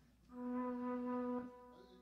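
One sustained keyboard note from a breathy, flute-like sample, held steady at one pitch for about a second and then released.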